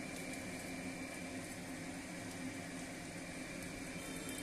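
A pot of curry simmering on a gas stove: a steady low bubbling hiss, with a faint steady hum underneath.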